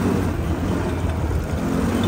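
Quad bike (ATV) engine running while riding on a dirt road, a low steady drone under a constant rush of wind on the microphone.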